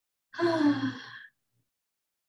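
A woman's audible sighing exhale, lasting about a second and sliding slightly down in pitch.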